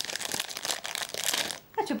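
Thin clear plastic bag crinkling as hands unwrap a coiled cord necklace from it, a continuous crackly rustle that stops about a second and a half in.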